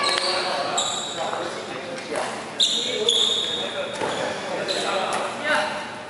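Badminton rally on a wooden gym court: rackets striking the shuttlecock with sharp hits a second or two apart, and sneakers squeaking briefly on the floor as the players move, all echoing in a large hall.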